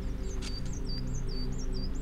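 A held, low musical drone runs under a small bird chirping repeatedly: a quick series of short, curling high notes.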